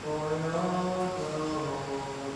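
A low voice chanting without clear words in slow, long-held notes that step from one pitch to another.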